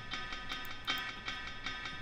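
An instrumental beat playing back quietly: a sustained melody with soft cymbal ticks, the low cymbal just brought into the arrangement.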